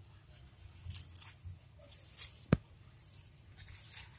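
Faint rustling and scraping among leaves and soil, with one sharp click about two and a half seconds in.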